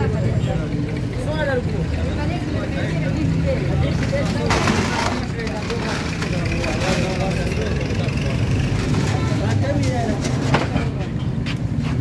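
Roadside street noise: a steady low engine hum from traffic, with people talking in the background. A brief hiss about four and a half seconds in.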